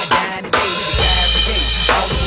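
Acoustic drum kit played over a hip hop backing track: a few quick drum hits, then about half a second in a big accent with the bass drum and a cymbal that rings on for over a second above a deep sustained bass note.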